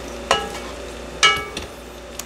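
Spoon stirring cooked green beans in an enamelled cast-iron pan, with two knocks against the pan about a second apart, each ringing briefly.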